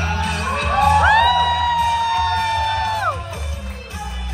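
Karaoke backing music with a steady deep bass beat. Over it a high voice glides up into one long held cry of about two seconds, then slides back down, amid crowd whooping.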